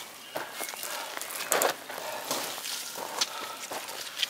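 Footsteps of a hiker climbing a dry, leaf-strewn dirt trail: irregular crunching and scuffing steps.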